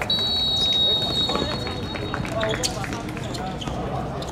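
A referee's whistle blown in one long, steady blast of about two seconds, with players' voices and the knock of the ball on the court around it.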